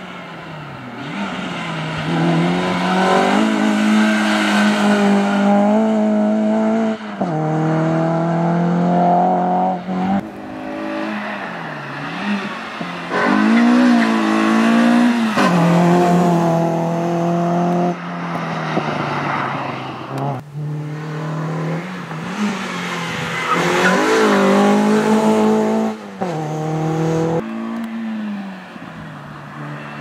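Renault Clio RS's 2.0-litre four-cylinder engine revving hard through a cone slalom, its pitch climbing and then dropping again and again as the driver accelerates, lifts and changes gear, with the tyres squealing in places.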